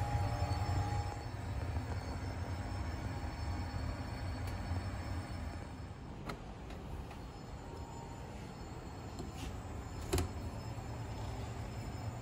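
Steady low hum of an air-circulating curing oven running with its door closed, with a couple of faint clicks about six and ten seconds in.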